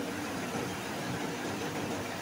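Steady low background hiss of room tone, with no distinct sounds.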